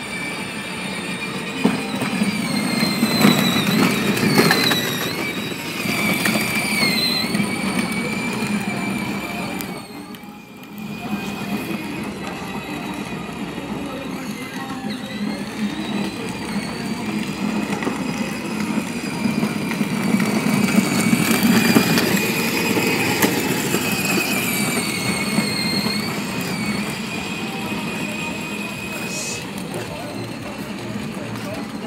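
Children's battery-powered ride-on toy car running: a high electric-motor and gearbox whine that wavers in pitch as it speeds up and slows, over the rumble of its plastic wheels on pavement. The sound briefly drops away about ten seconds in.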